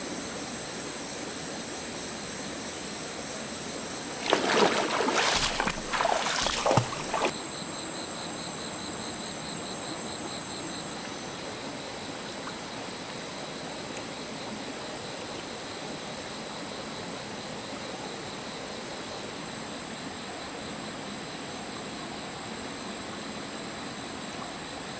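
A steady chorus of night insects, high and even, over a faint wash of stream water. About four seconds in, a loud burst of splashing in the shallow water lasts about three seconds.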